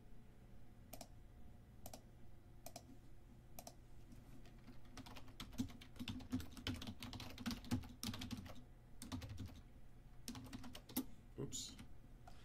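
Typing on a computer keyboard: single keystrokes about once a second at first, then a fast run of typing in the middle, and a few more keys near the end.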